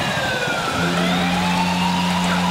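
Arena goal siren wailing, its pitch falling and then rising again just under a second in, over a low steady horn tone and a cheering crowd: the signal for a home-team goal.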